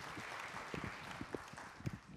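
Audience applause dying away, with a few low knocks.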